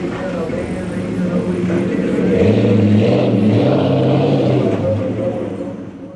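Engine of a tall lifted pickup truck pulling away, revving up about two and a half seconds in, then fading as the truck drives off.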